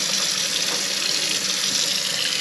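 Kitchen faucet running steadily into the sink, its drain just cleared of the blockage.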